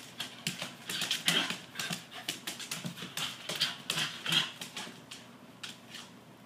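A dog's claws clicking and scrabbling on a hardwood floor as it spins in tight circles: a quick, irregular patter of clicks that thins out near the end as the dog stops.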